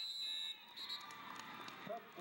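A referee's whistle: one sharp blast of about half a second, then a short second toot, followed by shouting voices from the crowd.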